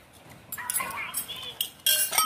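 Indistinct talking, then a few sharp clinks near the end as a spoon strikes the aluminium pot and china bowls.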